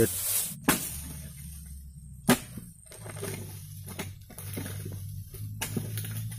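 A few sharp knocks or snaps, the loudest about two seconds in, over a low steady hum.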